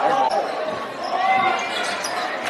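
Live basketball game in an echoing gymnasium: the ball bouncing on the hardwood court amid crowd voices and calls.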